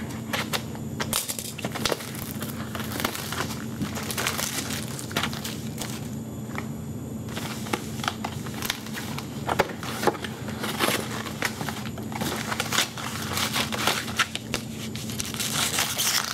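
Plastic shrink wrap crinkling and scratching as it is cut and stripped from a cardboard box of hockey cards, then the box lid opened and the foil card packs inside rustled, in a long string of short crackles. A steady low hum runs underneath.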